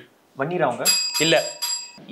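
A bell rings with a bright, steady high tone for about a second, starting about a second in, over men's voices.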